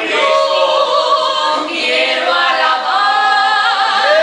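Two women singing a duet unaccompanied, their voices blending on long held notes that glide from one pitch to the next.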